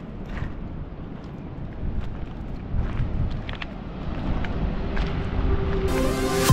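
Wind buffeting the microphone with a low rumble, with a few faint crunching footsteps on a gravel path. Music fades in near the end.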